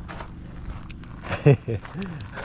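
Footsteps on gravel as someone walks, with light scattered crunches. Near the end, a man's voice sounds briefly and is the loudest thing heard.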